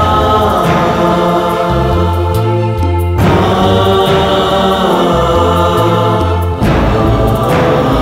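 A male choir of priests singing held chords of a devotional hymn to Mary over keyboard orchestration with a slow-moving bass line. The chords change with new phrases about three seconds in and again past six seconds.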